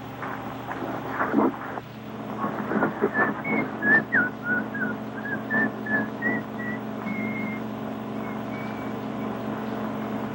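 Someone whistling a short tune over a steady engine hum, with a few knocks in the first seconds.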